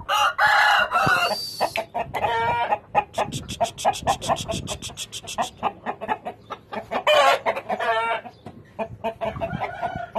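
Indian game rooster crowing several times, with a fast run of short clucks in between.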